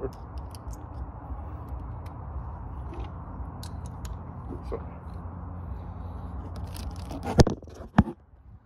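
Clear plastic sheeting crinkling and rustling against the phone as it is handled, with small scattered clicks over a steady low rumble. There is one sharp, loud knock near the end.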